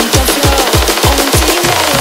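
Frenchcore track: a fast, distorted kick drum hitting on every beat, each hit dropping in pitch, under a stepping synth melody.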